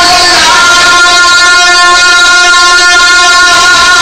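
A male naat reciter holding one long, steady sung note, with a slight shift in pitch about half a second in.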